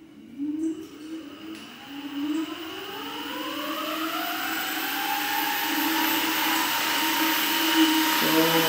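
Electric scooter hub motor on a sine-wave controller spinning its wheel up at full throttle with no load: a whine that rises steadily in pitch for about five seconds, then levels off near top speed. A rushing noise from the spinning wheel grows louder throughout. The motor itself is quiet.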